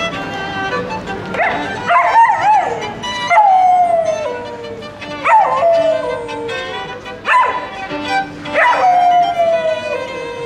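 A golden retriever howling along with a solo violin: several howls, each starting with a sharp rise and the longest sliding slowly down in pitch, over the violin's held notes.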